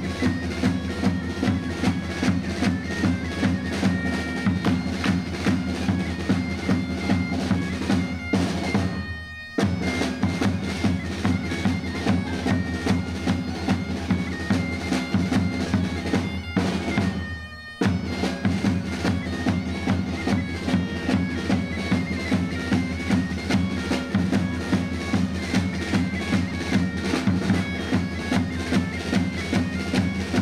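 Folk bagpipe (gaita) playing a lively dance tune over its steady drone, with a drum keeping a regular beat. Twice the music breaks off for about a second and then starts again.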